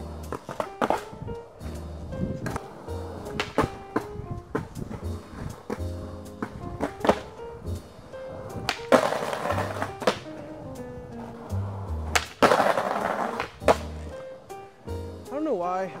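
Skateboard on concrete under background music with a bass line: sharp pops and landings of the board, and two loud scraping grinds of the trucks along a concrete curb, a little past halfway and again a few seconds later.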